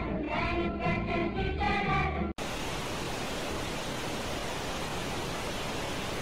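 Music with a melodic line over a bass line cuts off abruptly a little over two seconds in, and after a split-second gap a steady hiss of TV-static noise takes over.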